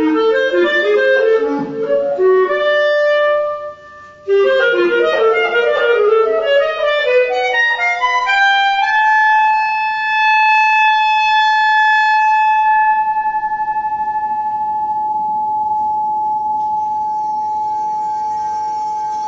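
Solo clarinet playing rapid runs of notes, breaking off briefly about four seconds in, then settling on one long high held note that slowly fades, wavering quickly in level in its last few seconds.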